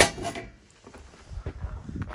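A sharp knock or clatter at the start, then quieter handling noise with a few low bumps as the camera is moved.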